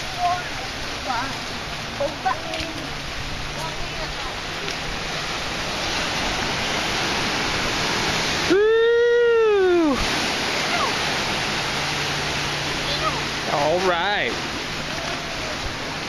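Steady wash of ocean surf breaking on a rocky beach. About halfway through, a voice gives one long call that rises and then falls in pitch, the loudest sound here, and brief voices come in near the end.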